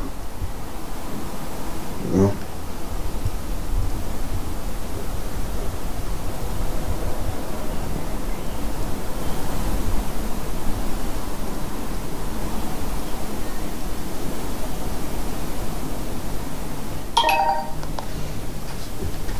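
A steady low rumble of background noise with no clear source. A brief sound cuts in about two seconds in, and a short pitched sound comes near the end.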